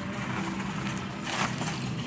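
Plastic bag of tortillas rustling as it is put into a wire shopping cart, with a short crinkle about a second and a half in, over a steady low hum.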